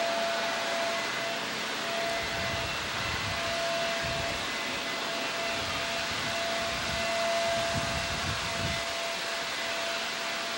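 Steady background hiss with a faint thin whine that comes and goes, and irregular low rumbling from about two seconds in until near the end.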